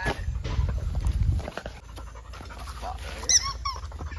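A dog panting, with two short high whines that fall in pitch about three seconds in.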